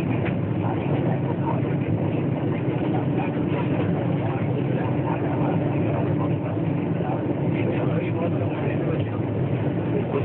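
Steady running noise inside a coach of the 12309 Patna Rajdhani Express as it moves through a station, with a constant low hum and people's voices in the background.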